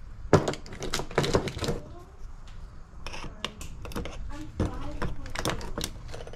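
Small sharp clicks and snaps of side cutters and fingers working at a zip tie inside a metal motorcycle handlebar switch housing, with clusters of clicks throughout.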